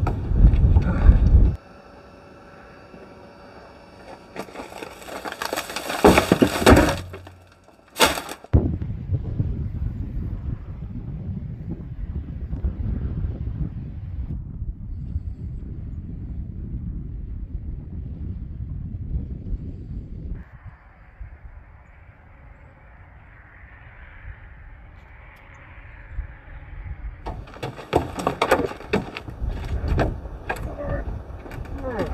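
Wind buffeting the microphone in low, rumbling gusts, broken by a few loud sudden noises, the longest lasting about two seconds around five seconds in.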